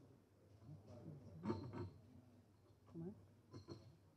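Faint, low murmured speech in a quiet room, in two short stretches.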